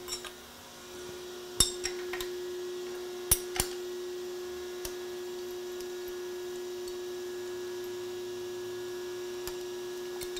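Sharp metallic clinks of a wrench and steel clamp hardware being handled on a milling-machine vise, each with a short ringing tail. Several come in the first four seconds and a couple more later, over a steady electrical hum.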